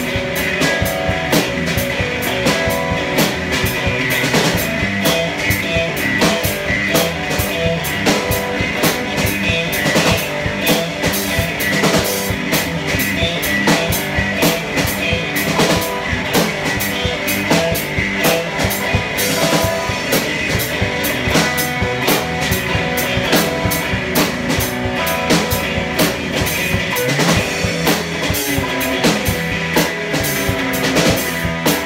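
Electric guitar and a Pearl drum kit playing an instrumental rock groove together, the drums keeping a steady, busy beat under the guitar.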